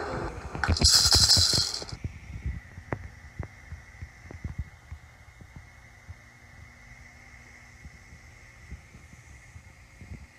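Hand percussion gives a short, loud rattling burst about a second in that cuts off suddenly, then scattered light clicks and taps trail off over a faint steady hum.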